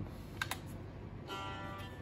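Two light clicks of the Eventide ModFactor's footswitch buttons pressed by hand as it steps between preset banks, then a short sustained guitar tone through the pedal's modulation effect near the end.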